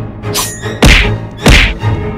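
Two heavy thuds about two-thirds of a second apart over orchestral score music with a low pulsing drone.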